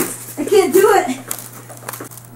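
A person's short wordless vocal sounds about half a second in, with a steady low electrical hum underneath.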